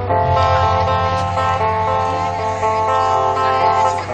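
Live rock band playing an instrumental passage: guitars sounding steady held chords over a bass line, with no singing.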